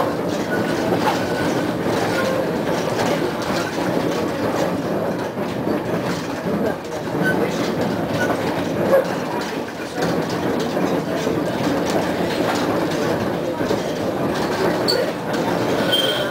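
Konstal 105Na tram running along the track, heard from on board: a steady rolling rumble with wheels clicking over rail joints and points, and brief faint wheel squeals on the curves.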